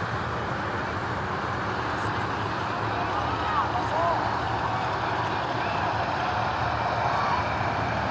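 Distant voices of players and spectators calling out now and then over a steady background hum.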